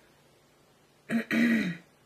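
A woman clears her throat about a second in: a short catch, then a longer rasp that falls in pitch.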